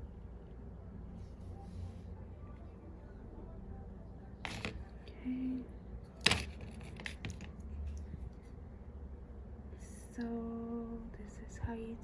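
Wooden clothespins handled on a tabletop: two sharp clicks a couple of seconds apart and a few lighter clicks, over a low steady hum. Near the end comes a brief hummed note from a voice.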